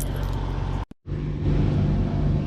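Steady low hum of outdoor background noise, broken by a brief gap of dead silence just under a second in.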